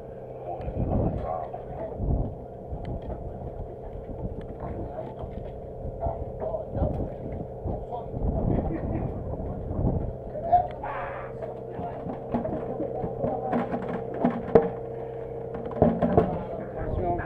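Steady drone of a fishing boat's engine, with several low thumps in the first ten seconds and scattered clicks and knocks from handling buckets and gear on deck, sharpest near the end.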